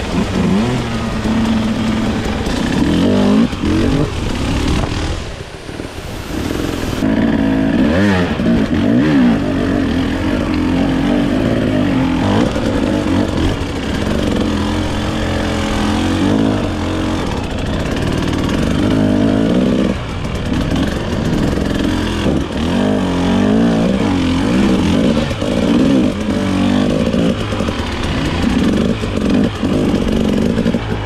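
Husqvarna enduro dirt bike engine heard close up on rough rocky ground, its revs rising and falling constantly as the throttle is worked. It drops off briefly about five seconds in, then picks up again.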